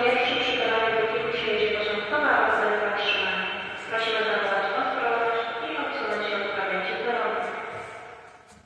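Railway station public-address announcement: a voice over the hall's loudspeakers, loud and echoing, sounding thin with no high end. It is sudden and loud enough to startle someone standing nearby, and it fades out just before the end.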